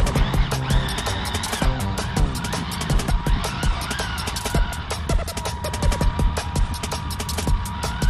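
Background electronic music with a fast, steady beat.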